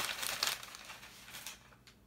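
Crumpled brown packing paper crinkling as it is pulled out of a cardboard box, loudest in the first half-second and then dying away.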